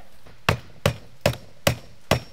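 Hammer driving a nail through vinyl J-channel into the wall: four sharp, even strikes, about two and a half a second.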